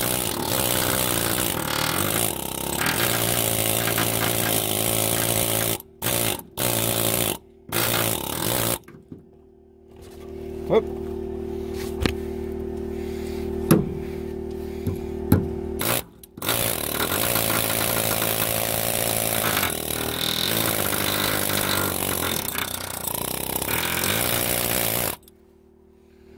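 Pneumatic air hammer chipping caked rust scale off a steel truck frame. It runs in long stretches, stutters in short bursts around six to nine seconds in, then drops out for several seconds, leaving a steady low hum with a few sharp knocks. It starts again and cuts off about a second before the end.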